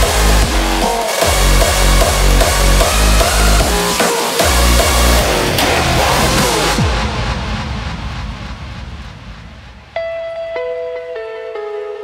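Hardstyle DJ mix: distorted hardstyle kick drums on a steady fast beat with two short breaks, then a falling sweep about six and a half seconds in as the beat drops out and the sound fades. About ten seconds in a clean, sustained melody of held notes begins, the mix moving into the next track.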